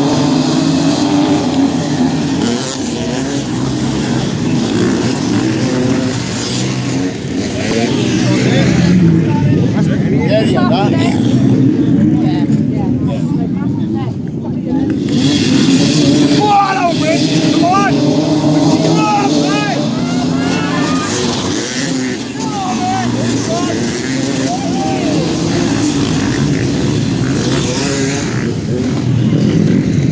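A pack of off-road racing motorcycles running and revving hard as they ride past and away up the track, their engines overlapping in a continuous din. Voices are mixed in, with rising and falling calls between about 16 and 22 seconds in.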